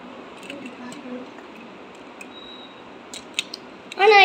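Hands handling a toy construction-kit car: a cluster of light, sharp clicks and taps of its plastic and metal parts near the end, against a quiet background.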